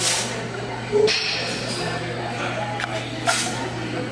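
A man's forceful exhales while squatting a loaded barbell: three short hissing breaths, at the start, about a second in and just past three seconds, over a steady low hum.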